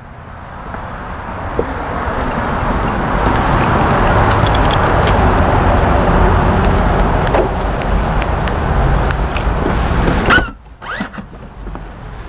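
Air-conditioning blower fan of a 2015 Smart fortwo Pure, a steady rush of air that builds over the first few seconds and cuts off suddenly near the end.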